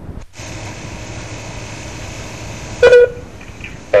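Steady hiss and low hum on a telephone line, with one short, loud, steady-pitched tone about three seconds in.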